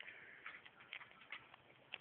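Near silence broken by a few faint, irregular clicks, about five in two seconds.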